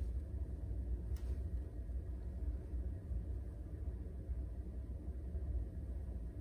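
Quiet room tone: a steady low rumble, with one faint click about a second in.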